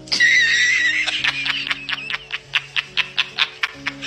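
A man laughing hard: a high wavering squeal, then a quick, even run of short 'ha' bursts, about five a second. Background music with long held notes plays under it.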